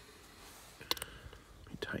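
Quiet room tone with a single sharp click about a second in, then a man starting to speak softly near the end.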